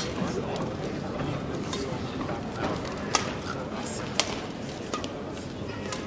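Badminton rackets striking the shuttlecock in a rally: a series of sharp hits about a second apart, the loudest two about three and four seconds in, over the steady background noise of a hall with voices.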